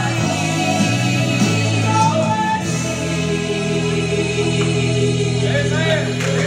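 A female gospel vocal trio singing in harmony through microphones over sustained instrumental chords, moving into long held notes in the second half as the song draws to its close.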